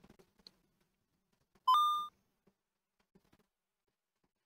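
A single short electronic beep from the computer about halfway through: a brief step up to a held tone that fades out in under half a second, an alert that the image processing has finished. Otherwise near silence.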